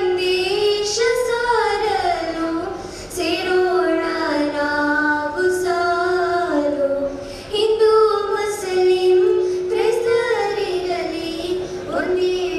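Young girls singing a song together through microphones, in long held notes joined by gliding phrases.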